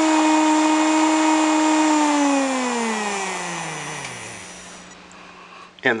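Small brushed DC motor running with a steady whine, driven by transistor PWM from an Arduino. About two seconds in, its pitch glides down and fades as it slows to a stop, consistent with the speed being turned down.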